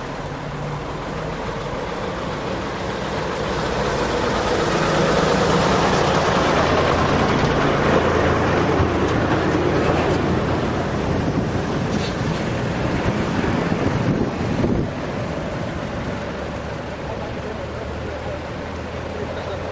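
Heavy road traffic at close range: truck engines running in a slow-moving jam. The noise swells for several seconds as a flatbed truck comes alongside, then eases off.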